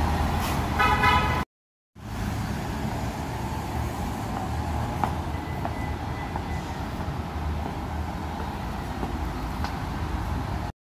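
Steady city traffic rumble with a low hum and a few faint taps. A brief pitched toot sounds about a second in, just before a short cut to silence.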